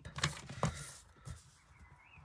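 Pencil marking a line on card stock at a paper trimmer's ruler: a short scratchy stroke with a few light taps in the first second, then faint handling of the paper.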